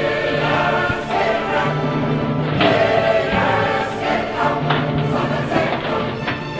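Choral music: a choir singing sustained chords.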